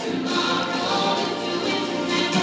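A group of teenage girls singing a cappella in harmony in a large gymnasium.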